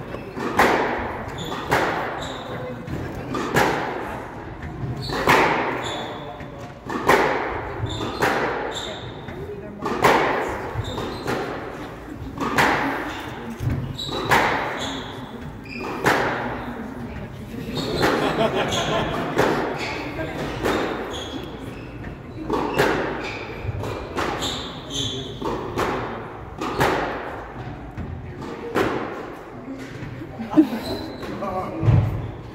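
A squash rally: the ball cracking off rackets and the court walls about once a second, each hit echoing in the court, with short high sneaker squeaks on the wooden floor between shots.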